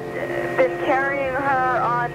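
A voice speaking over background music with a steady held tone; the words are not picked up in the transcript.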